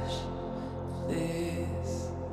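Slow, sustained music: a steady low drone under long held notes, with a soft hiss-like swell about a quarter second in and another near the end.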